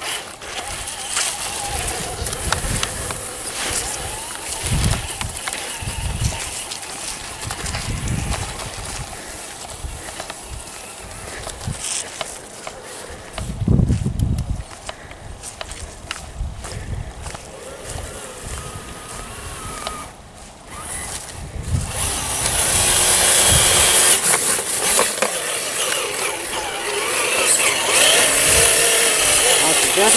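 Traxxas TRX-4 electric RC crawler on a 3S LiPo driving through soft, slushy snow and mud: electric motor and drivetrain whine with spinning tyres, with low thumps on the microphone. It gets louder and brighter in the last third.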